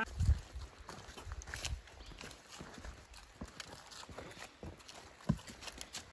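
Footsteps of several people walking on a dirt forest trail: irregular thuds and crackles. A heavier thump comes just after the start and another a little after five seconds in.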